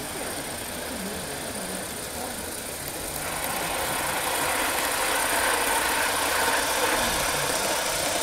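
Gauge 1 live steam tank locomotive running on its track, the steam exhaust and running gear growing louder about three seconds in as it comes close.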